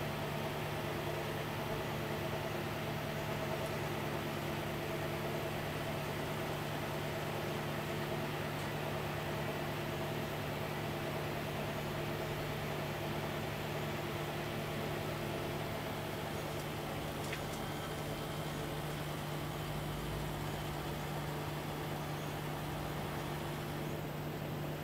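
A steady low mechanical hum with a few faint constant tones, unchanging throughout, and a faint click about seventeen seconds in.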